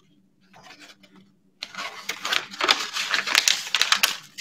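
A paper heart being crumpled in the hands. After faint rustles, a dense crackling starts about one and a half seconds in and keeps going.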